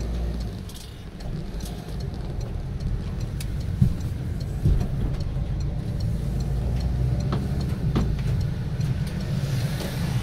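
A car's engine and road noise heard from inside the cabin as it pulls out of a junction and drives off: a steady low rumble that grows louder over the first couple of seconds, with a couple of short knocks around four and five seconds in.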